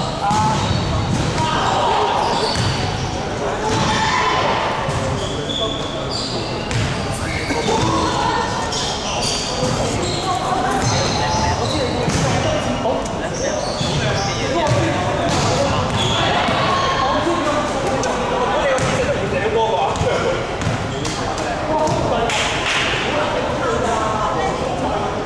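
Untranscribed voices chattering in a sports hall, with basketballs bouncing on the wooden court now and then.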